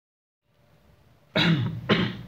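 A man coughing twice, the two coughs about half a second apart, the second right at the end.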